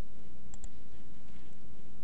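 Two quick computer mouse clicks about half a second in, over a steady low electrical hum and room noise.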